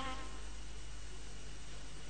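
Faint steady hiss with a low hum underneath: background noise of the recording, with no distinct event.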